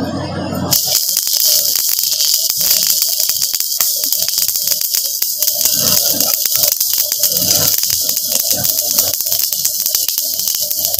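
Manual stick (shielded metal arc) welding of mild-steel strips with an MS electrode. The arc strikes about a second in, then crackles and sizzles steadily while the bead is laid along the butt joint.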